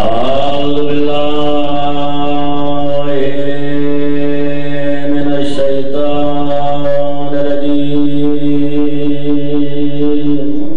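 A man's voice chanting one long held note in a recitation, sliding up into it at the start and then keeping a steady pitch, with short breaks about three and five and a half seconds in.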